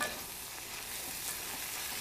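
Sausage, cream cheese and green chili mixture sizzling steadily in a cast-iron pan while being stirred with a wooden spatula.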